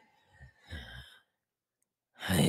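A person's soft sigh lasting about half a second.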